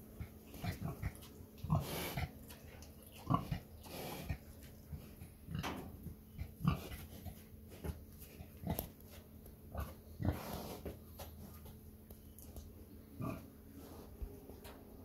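Grey Mangalitsa pig grunting now and then while eating feed pellets off the ground, with short crunching clicks between the grunts.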